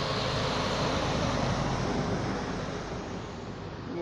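Heavy truck passing close by on a wet highway, its tyre and engine noise easing off as it moves away.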